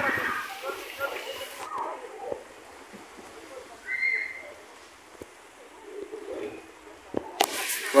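Quiet outdoor park ambience with scattered soft knocks and faint distant voices, and a short high-pitched call about halfway through.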